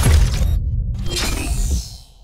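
Logo sting for a podcast intro: a sudden deep, booming hit with a hissing, crackling top, a brief dip about half a second in, then a second swell that fades away near the end.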